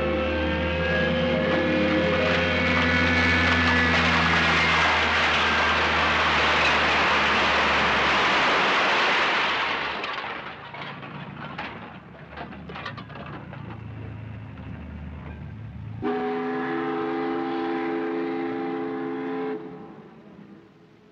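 The orchestral score ends on a loud held chord that swells into a bright cymbal-like wash, dying away about ten seconds in. Scattered light clinks and knocks follow. Then a steady horn blast of several held notes sounds for about three and a half seconds and cuts off.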